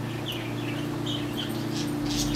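A few short bird chirps over a steady low mechanical hum.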